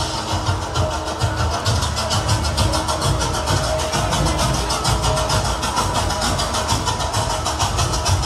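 Loud festival drumming with a fast, even beat over dense crowd noise.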